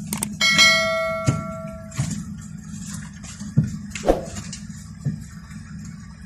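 A bright bell-like chime rings for about a second and a half near the start: the notification-bell sound effect of a subscribe animation. Under it runs a steady low rumble from the bus's idling diesel engine, with a few sharp knocks.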